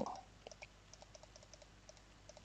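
Faint clicking of a computer keyboard: a dozen or so light keystrokes.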